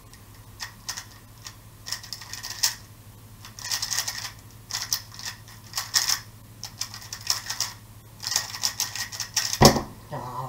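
A 3x3 speedcube (RS3M 2020) being turned very fast during a timed solve: bursts of rapid clicking and clacking layer turns, broken by short pauses. Near the end it stops with one loud thud as the hands slap down on the timer pad to stop the solve.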